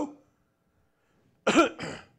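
A man clearing his throat in two short, sharp bursts, about a second and a half in.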